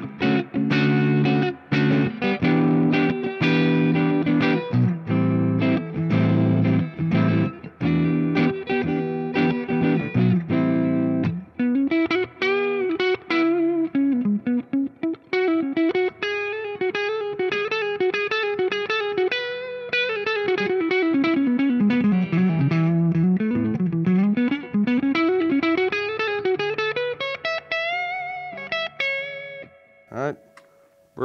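Gibson Custom Shop 1958 reissue Korina Flying V electric guitar played through an amp's clean channel with volume and tone all the way up. For about the first eleven seconds it plays rhythmic chords, then a single-note line whose pitch sweeps up and down.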